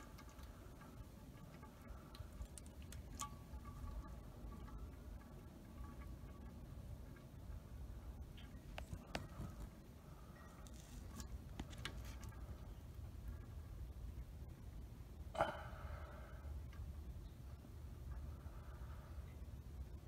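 Used engine oil pouring in a steady stream from the oil pan's drain hole into a milk pail, heard as a faint soft splashing. A single sharp click about fifteen seconds in.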